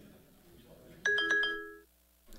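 Electronic alert chime of a council chamber's voting system: a few quick, bright notes about a second in, ringing out in under a second. It signals that the voting panel has been opened.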